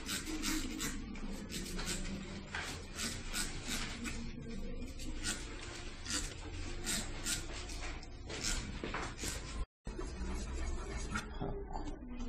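Hand trigger spray bottle misting water: a long series of short hissing sprays, often several a second, until a short break near the end.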